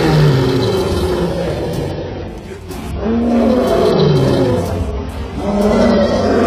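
A lion roaring three times in succession, each roar falling in pitch, with music underneath.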